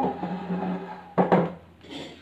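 A wooden chair dragged across a hard floor, its legs scraping in a steady low drone for about a second and a half, then two knocks as it is set down and sat on.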